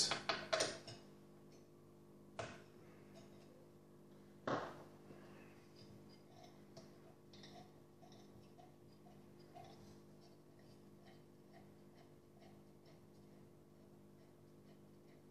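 The mounting screws of a CPU air cooler being loosened by hand: two sharp knocks in the first few seconds, then a faint, regular clicking of about three ticks a second over a low steady hum.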